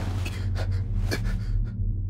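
A man breathing hard in sharp gasps, about one every half second, over a steady low hum.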